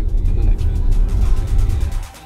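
Steady low road rumble heard inside a moving car's cabin, with music faintly underneath. It cuts off abruptly at the end.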